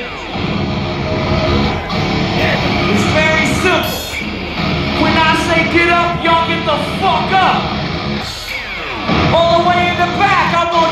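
Live heavy rock band playing loud through a large outdoor festival PA, electric guitar prominent with bending notes, heard from in among the crowd.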